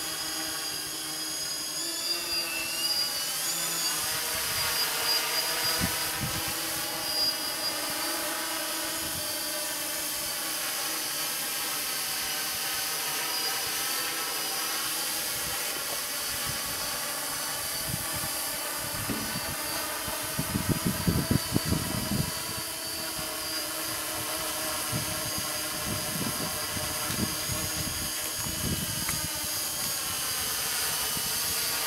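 Quadcopter's four electric motors and propellers whining as it hovers, the pitch drifting up and down as the flight controller works the throttle. A few seconds of low bumping come about two-thirds of the way in.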